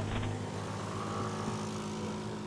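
Motor scooter engine running steadily as it rides along, a low even hum with road and wind noise.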